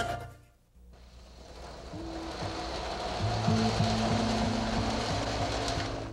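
The jingle fades out, then a steady rushing rumble builds up, the sound of a train running. Low music notes join it about three seconds in.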